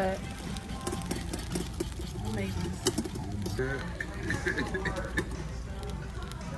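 Restaurant dining-room din: a steady low hum under background voices and music, with a few sharp clicks and laughter near the end.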